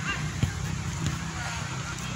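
A football kicked on grass: one sharp thump about half a second in, with a weaker knock about a second in, over a steady low rumble of outdoor noise. A faint short high call is heard near the start.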